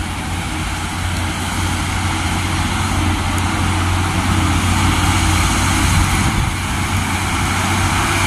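Mitsubishi Fuso FN 527 truck's diesel engine working uphill toward the listener, a low steady drone that grows louder as it approaches.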